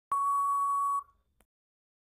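Countdown timer sound effect: one steady electronic beep about a second long, marking time up at the end of the countdown.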